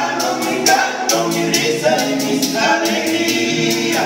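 Several men's voices singing a paseo together in harmony, over strummed acoustic guitars and a shaker ticking in a steady beat.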